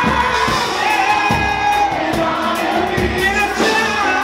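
Live pagode band music with a steady percussion beat under many voices singing the melody together, the audience singing along in chorus.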